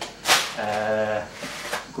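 Handling of VHS cassettes, their cardboard sleeves and a plastic bag. There is a sharp rustling clatter about a third of a second in, the loudest sound, and a shorter one near the end.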